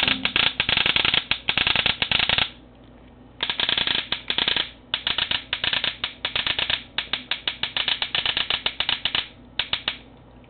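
Proto Matrix SLG electronic paintball marker firing in rapid strings of shots in Millennium ramping mode at a capped rate of fire. There are four bursts, with short pauses after about two and a half seconds and again near the end.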